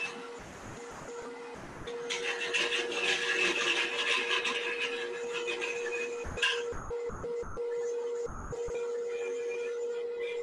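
A wood lathe runs with a steady hum while a turning tool cuts a spinning wooden top blank. There is a long, continuous hissing cut from about two seconds in to six and a half seconds, then shorter intermittent cuts with a few low knocks.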